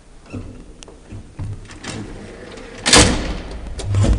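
Doors of an old Graham Brothers passenger elevator being worked: a few light clicks and knocks, then a loud clatter about three seconds in and a low thud at the end.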